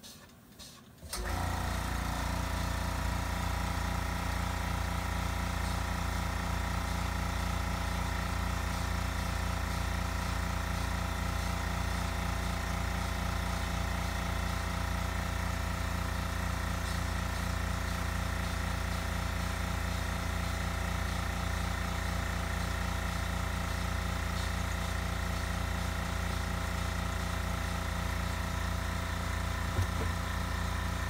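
Air compressor motor starting suddenly about a second in and then running steadily, supplying air to a powder-coating spray gun.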